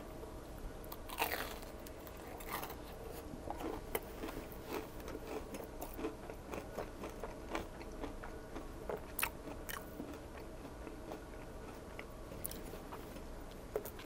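Chewing a mouthful of crumb-coated Korean-style corn dog, heard up close: soft, scattered crunches and mouth sounds throughout, with a few crisper crunches.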